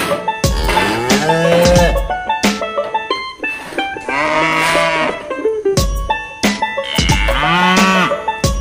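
Cattle mooing: several long, drawn-out moos that rise and fall in pitch, over background music with a steady beat.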